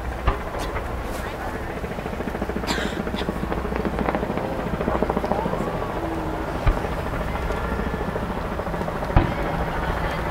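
Aerial fireworks shells bursting: three sharp booms, one right at the start, one about two-thirds of the way through and one near the end. Under them runs steady crowd chatter.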